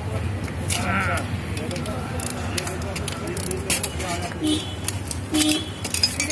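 A few sharp metal clinks from hand tools on an AC compressor's clutch plate as its centre nut is turned with a T-handle socket wrench, over people talking in the background and a steady low hum.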